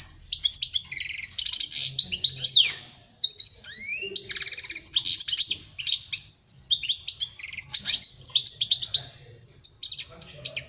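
European goldfinch singing a fast, continuous twittering song of trills, buzzy rattles and whistled glides, with a brief pause about three seconds in.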